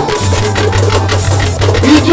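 Live band music: drums and percussion striking in a steady rhythm over a held bass line, with no voice.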